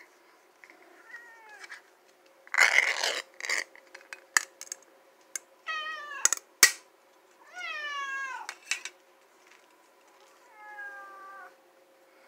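Domestic cats meowing, about four meows that each fall in pitch, the longest lasting about a second. Between them come a short rustling burst and a few sharp clicks.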